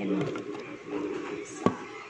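Metal food cans handled and knocking together once, a sharp clink about a second and a half in, after a woman's low, drawn-out vocal sound.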